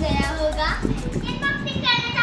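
A young girl's voice, speaking in short phrases.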